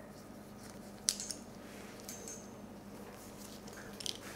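Plastic roller clamp on an IV tubing set being rolled open by hand, with a soft click about a second in, letting the albumin run to prime the line. Faint handling of the tubing follows.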